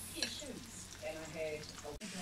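Hot oil sizzling steadily around okoy fritters (bean sprouts and grated vegetables in batter) frying in a small skillet, with a faint voice in the background.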